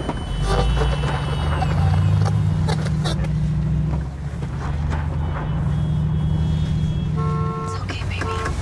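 Car engine and road noise heard from inside the cabin of a moving car, a steady low rumble, with a few light clicks and a short pitched tone near the end.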